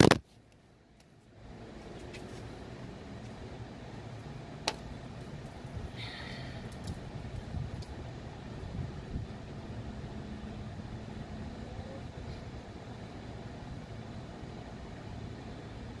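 A knock of the phone being handled as it is covered, then about a second of near silence, then a steady, muffled low rumble with a faint hum and a few small clicks and rustles.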